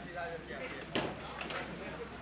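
Several people talking in the background, with two sharp knocks about a second in and half a second later.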